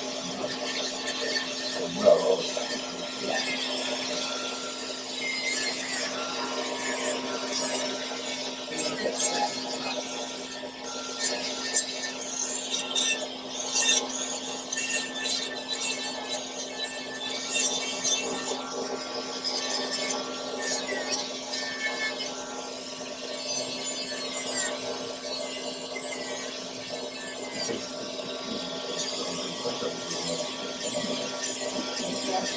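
Podiatry nail drill running with a steady whine while its burr grinds a thick toenail, with irregular sharper scraping spikes each time the burr bites the nail. The nail, damaged by psoriasis and fungus, is being debrided and thinned.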